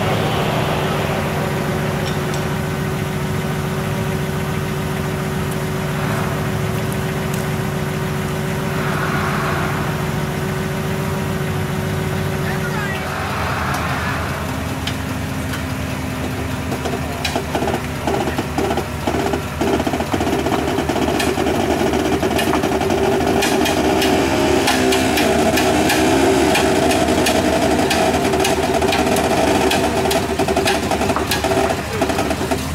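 Truck engine idling steadily; about halfway through its note changes, and a louder, rattling mechanical running builds toward the end as the mud-stuck Jeep is winched out. Faint voices are heard now and then.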